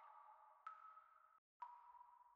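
Faint electronic music: two soft pings, each starting sharply and ringing out on one tone as it fades, with a brief gap of silence between them.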